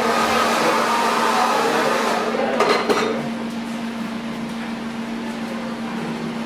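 Hand-held hair dryer running with a steady hum and rush of air. It is loudest for the first few seconds, then grows quieter after a few clicks about three seconds in.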